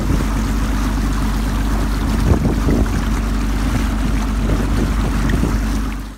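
Boat's DAF 475 six-cylinder diesel running steadily under way, with water rushing along the hull. There is a brief louder jolt a little over two seconds in.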